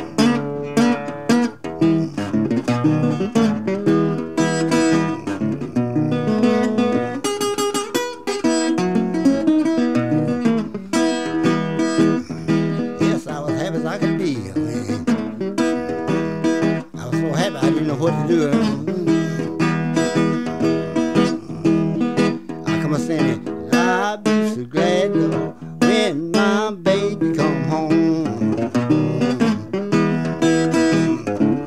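Acoustic blues guitar played solo: a long instrumental passage of quickly picked notes over a steady, repeating bass beat.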